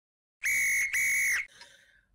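A referee's whistle blown twice, two high, steady blasts of about half a second each in quick succession, the second dipping slightly in pitch as it stops.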